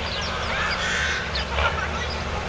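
Birds calling: a scatter of short falling chirps and calls over a steady low rumble.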